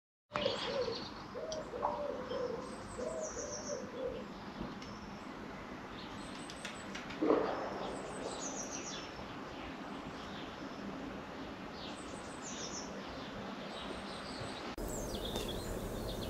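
Birds chirping in the background: short high chirps every second or two, with a lower repeated call in the first four seconds. There is one dull knock about seven seconds in.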